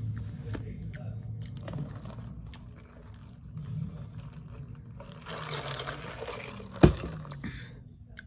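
Close-up chewing and mouth sounds with small clicks, then a noisy slurping sip from a disposable cup from about five seconds in. A single sharp knock comes near seven seconds.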